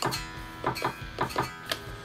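A metal screwdriver tapping on the pickups of an electric guitar plugged into an amplifier, heard as a quick series of about six amplified taps with the strings ringing after them. It is a pickup test with the selector in the middle position, checking that the wiring works.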